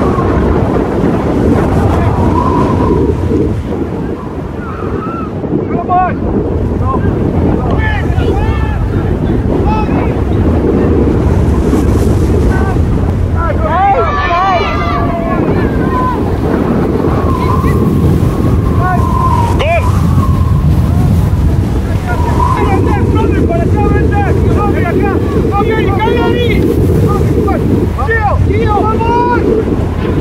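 Wind buffeting the microphone, a loud steady rumble, with distant shouting voices over it, loudest about halfway through.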